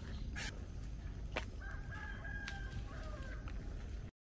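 A rooster crowing faintly: one long held call that drops in pitch at its end. A single sharp click comes about a second and a half in, over a steady low rumble.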